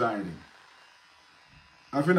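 A man's voice trails off about half a second in and starts again at the very end. In between, an electric beard trimmer buzzes faintly.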